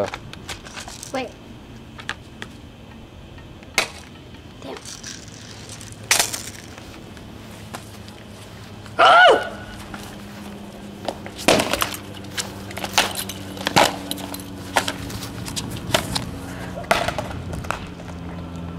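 Hockey stick striking shin guards and a baseball helmet: a quick run of hard knocks and cracks through the second half, after a loud shout about halfway through.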